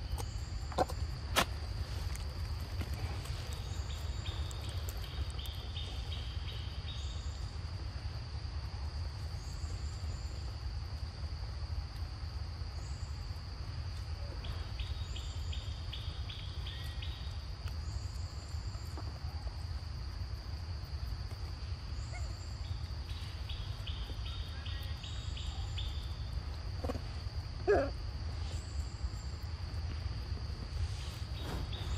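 Outdoor insect chorus: a steady high-pitched drone, with trains of rapid trilling a few seconds long about every ten seconds and faint high chirps about every second and a half, over a constant low rumble.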